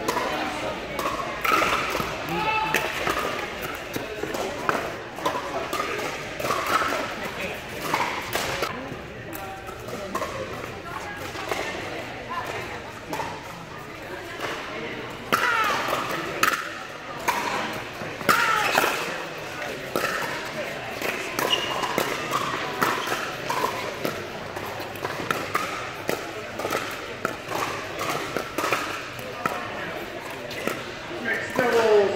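Pickleball rallies: repeated sharp pops of paddles striking a plastic ball, with the ball bouncing on the hard court, inside a large indoor court hall. Players' voices and chatter run underneath.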